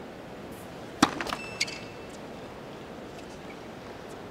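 A tennis serve: a sharp crack of racket on ball about a second in, then a brief squeak and a second, quieter knock about half a second later, over the low murmur of a stadium crowd.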